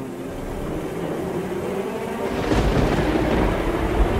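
Rolling thunder with a rain-like hiss, swelling louder about two seconds in, over a low droning music bed.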